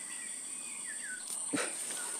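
Steady high-pitched insect drone, with a few faint falling whistle-like calls in the first second and a short sharp sound about one and a half seconds in.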